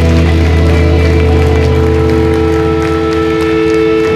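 Electric guitar and bass held through amplifiers as a loud, steady drone of sustained notes, with the low notes cutting off at the end.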